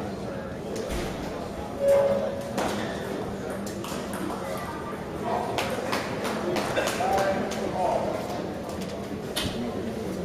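Celluloid table tennis ball clicking in scattered, irregular taps, over the murmur of spectators in a large hall. A short squeak about two seconds in is the loudest sound.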